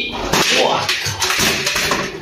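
Water splashing as a blanched cow head is washed by hand in a stainless steel basin.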